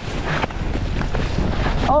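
Mountain bike rolling fast over rough dirt singletrack, with a steady low rumble of wind on the microphone and overgrown brush swiping against the rider and handlebars.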